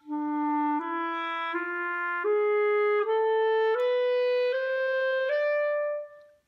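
B-flat clarinet playing the Mishaberach mode on E as a slow ascending scale over one octave: eight evenly held notes, E, F-sharp, G, A-sharp, B, C-sharp, D, E, each about three-quarters of a second long.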